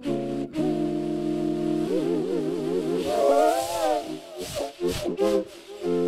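Homemade Japanese knotweed (Fallopia japonica) stalk flute played through a TC Helicon VoiceLive Touch effects unit, several notes sounding together as a held chord. About two seconds in the notes begin to waver and rise in pitch. Near the end the playing breaks into short, separate notes with a few sharp breathy pops.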